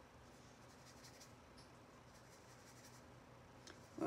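Near silence, with a few faint scratchy strokes of a fine paintbrush dabbing and mixing paint on a palette.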